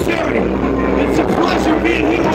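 Loud live metal band playing through a club PA: a heavy, steady low end of distorted guitar and bass with a harsh vocal over it, recorded from the crowd.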